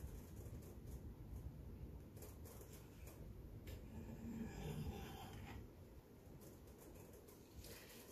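Faint scraping and rubbing of a palette knife spreading acrylic paint along the edge of a canvas, over a low background rumble.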